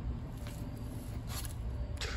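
Faint handling noise from rubber-gloved hands working a small wet aluminum part, with a couple of brief rustles over a low steady rumble.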